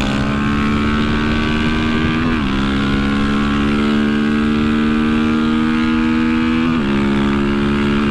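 Honda CB300F Twister's single-cylinder engine, fitted with a tuned camshaft, pulling hard at full throttle at highway speed, its pitch climbing steadily. The pitch dips briefly twice, about two and a half seconds in and again near seven seconds, as the rider shifts up a gear. Wind rush rides under the engine.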